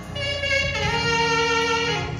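Saxophone playing a slow melody of long held notes, with a sustained low keyboard accompaniment underneath.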